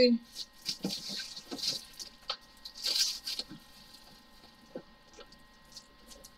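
Clear plastic bags rustling and crinkling with small clicks as bags of diamond painting drills are handled and packed into a bigger bag. The rustling is busiest in the first few seconds, then thins to a few faint ticks.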